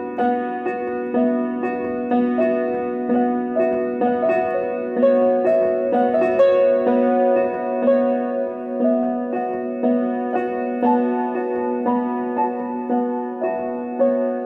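Upright piano being played: a steady stream of notes, about two to three a second, over sustained lower notes, working through a repeated chord progression.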